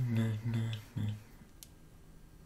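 A man's voice speaking for about the first second, then faint room tone with one light click.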